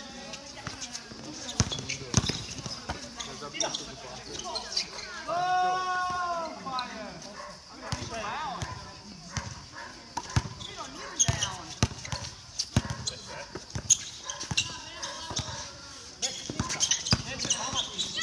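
A basketball bouncing on a hard court, repeated sharp irregular thuds of dribbling and passing during play. Players' voices call out over it, with one long shout about five seconds in.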